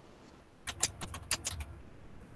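Typing on a computer keyboard: a quick run of about eight keystrokes, starting a little over half a second in and lasting about a second.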